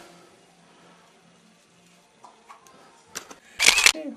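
Faint room tone with a few small clicks, then near the end a short, loud camera shutter sound as a photo is taken.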